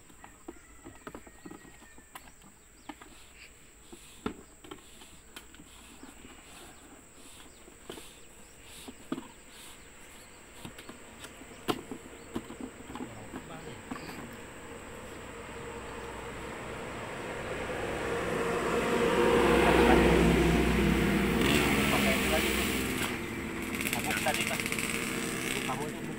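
Scattered light clicks and taps from hands handling the electric fuel pump at its mounting on a removed fuel tank. Later a louder rumbling noise swells, is loudest about twenty seconds in, and eases off.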